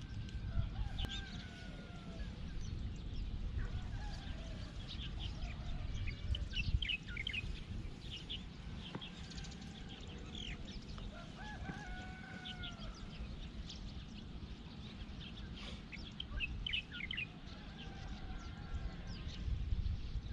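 Outdoor birdsong: many short chirps from small birds throughout, with several longer, arching calls lower in pitch a few seconds apart, over a steady low rumble.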